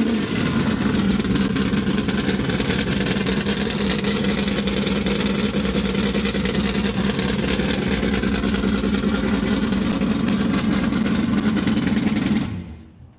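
1971 Dodge Charger R/T drag car's V8, just fired up and idling steadily and loudly with no revving.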